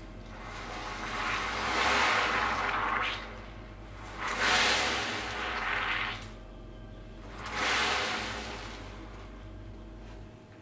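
Water poured into a glass bowl of caustic soda pearls, splashing and swirling in three pours of a second or two each, the last the shortest.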